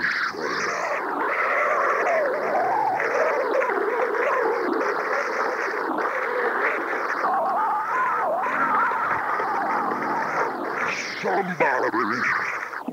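A church congregation of many voices shouting and praising at once, a steady, unbroken din.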